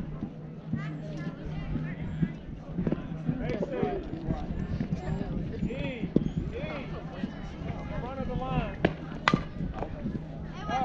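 Indistinct voices of players and spectators chattering at a softball game over a steady low hum, with a few short sharp knocks; the loudest knock comes near the end.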